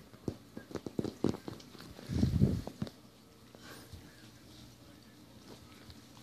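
Dachshund puppy's claws clicking on a tile floor: a quick, irregular series of clicks over the first three seconds, with a brief rustle about two seconds in, then quiet.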